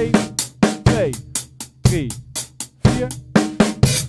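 Acoustic drum kit played in a steady groove of snare, bass drum and hi-hat, about four hits a second. The playing stops near the end.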